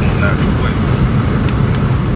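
Steady low rumble of road and engine noise inside a car's cabin, with brief faint speech from the dashboard TV's speaker.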